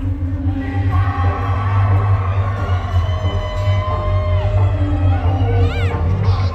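Live band music heard through a concert PA in a large hall, with a heavy bass line under long held keyboard or guitar notes. Crowd noise runs under it.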